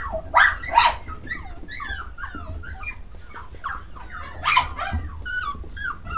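Several English Cocker Spaniel puppies whining and yipping, many short squeaky calls in quick succession.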